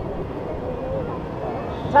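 Wind buffeting the microphone of a camera on a swinging ride gondola, an uneven low rumble, with faint voices under it.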